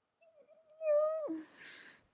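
A single short voice-like call held at one steady pitch for about a second. It drops abruptly to a lower pitch and is followed by a breathy hiss.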